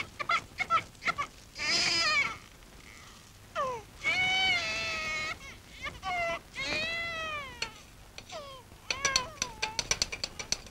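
An animal calling: about five drawn-out, high-pitched calls, each up to about a second long, some arching and some sliding down in pitch, with light clicks near the start and in the last second.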